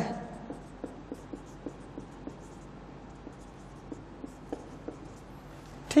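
Marker pen writing on a whiteboard: a run of short, faint strokes and taps as a line of handwriting is put down.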